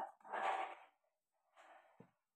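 A person's soft, breathy exhalations, like sighs: a louder one in the first second and a fainter one near the end.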